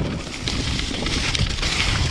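Ride noise from an electric mountain bike rolling over a leaf-covered dirt trail: tyres on the ground and wind on the microphone, a steady rumbling hiss.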